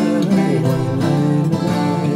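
Martin 000-42VS acoustic guitar picked in a steady accompaniment pattern, a run of changing notes between sung verse lines of a folk ballad.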